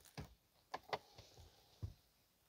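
Four faint, short clicks inside a pickup truck's cab, spread over two seconds, just after the ignition is switched on and the instrument cluster powers up.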